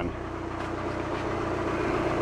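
Volvo electric power-steering pump running with the ignition switched on: a steady hum with a steady tone that comes in right at the start.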